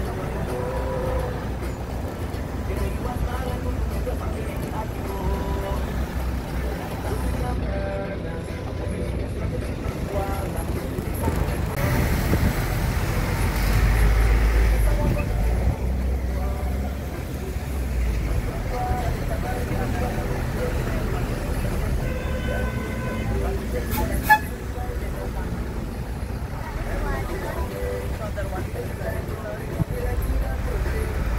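Low, steady rumble of a bus engine and surrounding road traffic in slow, congested driving, with indistinct voices in the background. A vehicle horn sounds briefly about 22 seconds in, followed by a single sharp click.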